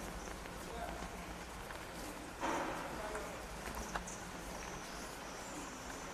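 Footsteps and shuffling on a hard floor as people walk in, with faint murmured voices and a brief louder rustle about two and a half seconds in.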